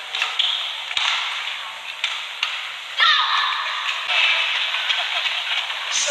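Badminton rally: sharp racket hits on the shuttlecock, with a short shoe squeak on the court about three seconds in, over a steady hiss of arena crowd noise.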